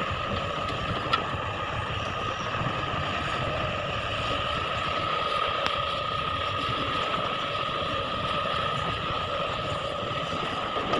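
Heavy diesel machinery running steadily, a crawler excavator at work loading ore, with a constant high whine over the engine rumble. One light click about a second in.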